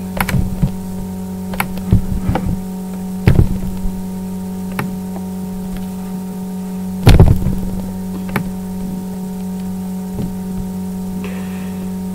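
Steady electrical mains hum with several higher steady tones on the recording, broken by scattered short mouse clicks and knocks and one louder low thump about seven seconds in.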